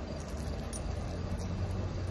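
Steady low hum under a faint, even hiss of outdoor background noise.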